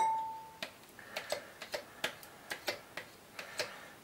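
A spoon clicking lightly against a plastic yogurt tub and a bowl while scooping thick yogurt out, about ten soft ticks at uneven intervals.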